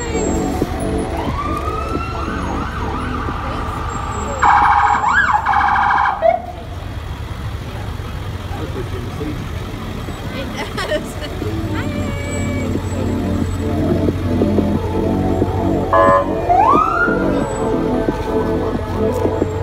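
Fire trucks passing slowly with sirens giving short rising whoops. A loud horn blast lasts about two seconds, a few seconds in, and a shorter blast and another siren whoop come near the end, over the low rumble of the trucks' engines.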